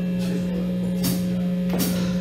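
A steady low drone from the band's amplifiers between songs, with two light cymbal taps about a second and a second and three quarters in, like a drummer counting in the next song.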